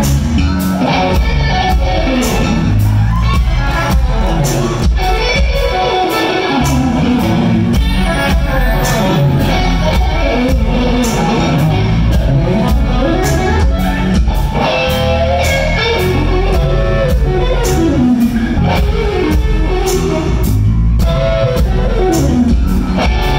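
Electric guitar lead lines with bent notes, played live over a full band with drum kit and bass.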